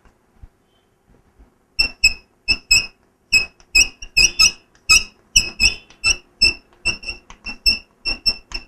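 Chalk squeaking against a blackboard as a line is written: a quick run of short, high squeaks, about three or four a second, starting about two seconds in.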